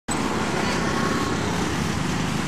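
Steady street ambience of road traffic.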